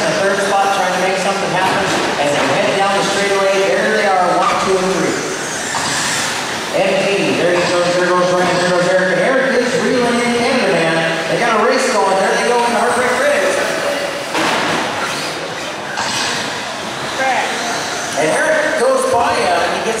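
Several radio-controlled short-course trucks racing, their motors whining and repeatedly rising and falling in pitch as they accelerate and slow through the corners, the sound echoing in a large hall.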